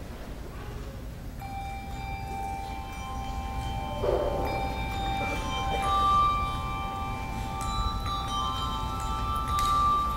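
A handbell choir playing: several handbells are rung and left sounding, their sustained tones at different pitches overlapping and building from about a second in, with fresh strikes now and then.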